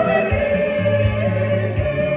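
A church congregation singing a hymn together over sustained bass notes and a steady low drumbeat.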